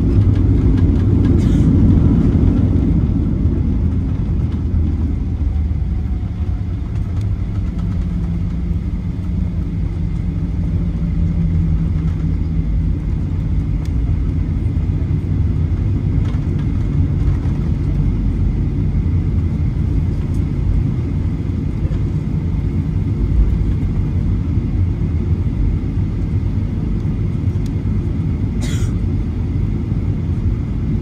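Cabin noise of a jet airliner taxiing after landing: a steady low rumble of the engines at low power and the wheels rolling on the pavement, a little louder at first. A single short click near the end.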